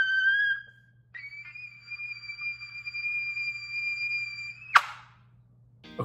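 King 1117 'Ultimate' B-flat marching trumpet: a held note stops, then after a short gap comes a long, steady, very high and fairly quiet note lasting about three and a half seconds. A short, sharp burst of noise follows near the end.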